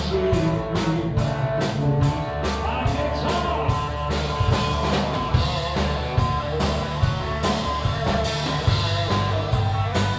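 Live rock band playing: electric guitar and bass over a drum kit keeping a steady beat.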